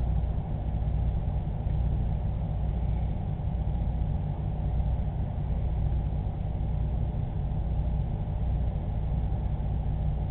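Steady low hum with no change in pitch or level and no distinct events.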